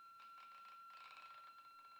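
Near silence, with a faint steady high-pitched tone and a faint flickering hiss.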